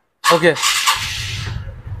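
TVS commuter motorcycle being started: a short hiss of cranking, then the engine catches and settles into a low, steady idle for the last second.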